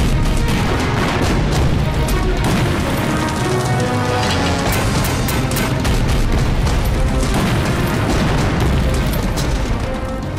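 Dramatic film score under battle sound effects: repeated gunshots and the booms of explosions, densest in the first couple of seconds.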